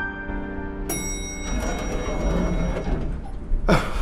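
The last held piano chord of the song, cut off about a second in. A noisy stretch with a low rumble follows, and a brief sweeping sound comes near the end.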